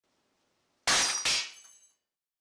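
Shop-built hand punch press driving its punch through metal plate: two sharp metallic cracks about half a second apart, then a brief high ringing that dies away.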